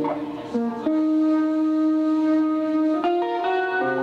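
Live instrumental music: electric guitar with guitar synthesizer playing long, steadily held chords that change several times, with bass underneath. The chord dips briefly about half a second in, then comes back full.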